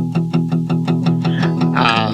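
Acoustic guitar's low E string, palm-muted and picked in steady downstrokes about six a second, with a little of the fifth string. It is the driving E-chord rhythm of a country song.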